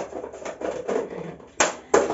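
Soft handling noise in a small kitchen, then two sharp clicks: one about a second and a half in and another just before the end.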